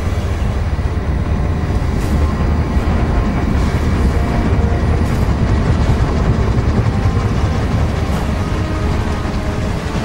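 Film sound design: a steady, deep, loud rumble of an ocean liner's turning propellers, heard as if underwater, with faint orchestral score underneath.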